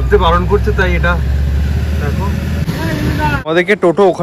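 Low, steady rumble of a vehicle engine running, with people talking over it. It cuts off abruptly about three and a half seconds in, and clearer talking follows.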